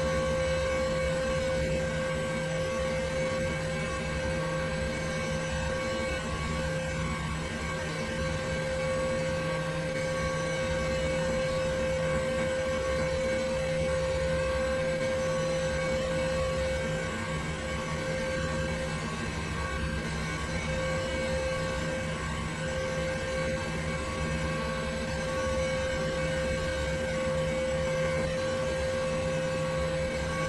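A desktop computer running: a steady whirring hum from its fans and drives, with a constant whine held throughout.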